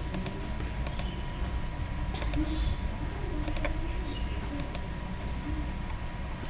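Clicks of a computer mouse and keyboard during editing, often in close pairs about a second apart, over a steady low hum.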